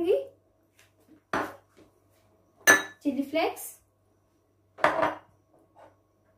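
Three separate sharp clinks of glass kitchen bowls being handled and set down, spread over a few seconds, as spices are tipped into a glass mixing bowl.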